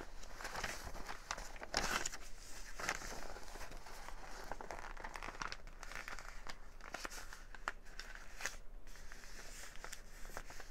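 Paper rustling and crinkling in irregular bursts as a large paper envelope is folded over and pressed flat by hand.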